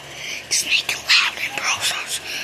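A child whispering close to the microphone in short breathy bursts, with no clear words.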